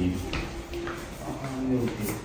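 Indistinct voices in short snatches, quieter than the talk around them, with a couple of faint clicks.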